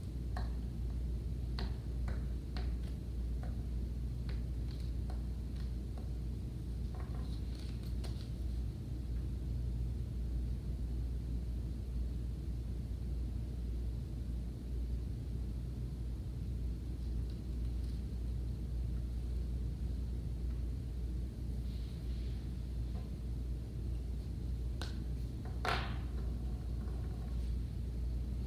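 Steady low room hum, with faint scattered clicks and rustles of paper and a glue stick being handled and pressed on a table, and one sharper click near the end.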